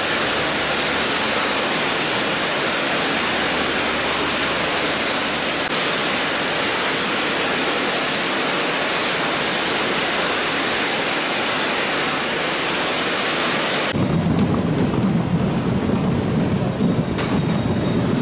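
Steady hissing din of machinery on a potato-processing factory floor. About fourteen seconds in it gives way to a lower rumble with rapid knocking and clatter as potatoes tumble along a conveyor belt.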